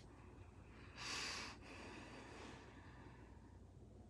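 A person's breath close to the microphone: one short, sharp exhale about a second in, trailing off into a softer breath out.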